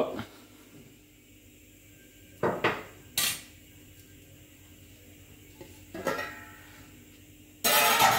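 Stainless steel pot lid and pot being handled: a few separate knocks and clinks, with the loudest clatter near the end as the lid comes off.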